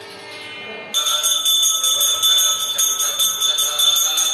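Brass puja hand bell (ghanta) rung rapidly and continuously during aarti, starting about a second in with a bright, steady ringing.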